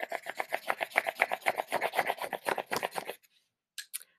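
Quick back-and-forth coloring strokes scratching across a sheet of paper held in the hand, about eight strokes a second, stopping about three seconds in; a couple of faint clicks follow near the end.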